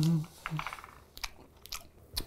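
A person chewing a mouthful of pasta with pesto, with a few soft mouth clicks. A hummed "mm" of approval trails off just at the start.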